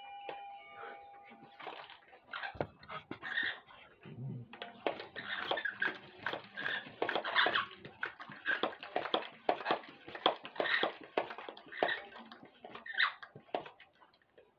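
Amazon parrot calling in a rapid run of short squawks and chatter, which starts a few seconds in and goes on densely to the end. It is preceded by a brief held tone.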